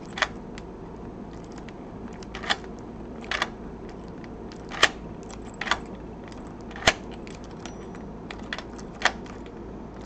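Key and cylinder of a Schlage JD-60 deadbolt clicking at irregular intervals as the key is worked back and forth, over a steady low hum. The lock's keyway had been jammed with superglue that was dissolved with acetone.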